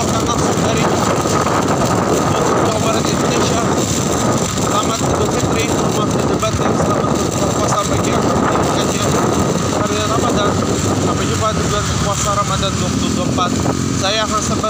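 Motorcycle engine running while riding along, with wind rushing over the microphone, a loud, steady noise throughout.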